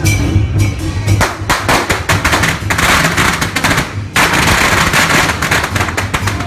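A string of firecrackers going off in a rapid, dense run of sharp cracks. It starts about a second in, breaks off briefly around four seconds, then resumes, over procession drums and cymbals.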